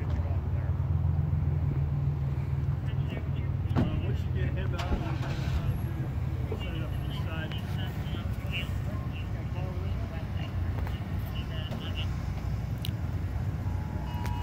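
A motor vehicle's engine running nearby in a parking lot, loudest in the first few seconds and then easing off, with faint indistinct voices in the background.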